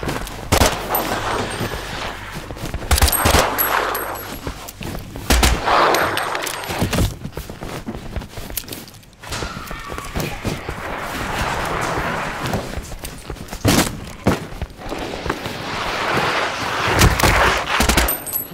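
Layered sound design for an action sequence: several bursts of gunfire and sharp impacts over footsteps, clothing movement and processed monster growls, on a basement ambience bed.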